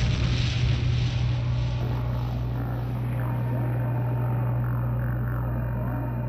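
Breakdown in a hardcore techno track: the drums have dropped out, leaving a steady low synth drone with a hissing wash over it that thins out over the first couple of seconds.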